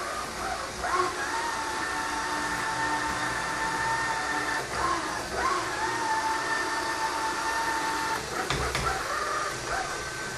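Aldi Stirling robot vacuum cleaner running on a wooden tabletop: a steady whine that breaks off twice with short shifts in pitch, and a brief knock near the end.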